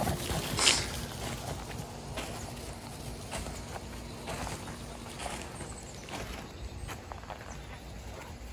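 Footsteps crunching in deep snow, roughly one a second, the loudest about half a second in, over a low steady rumble.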